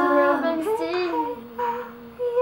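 A young girl singing a cappella, her pitch sliding between notes, and growing softer in the second half.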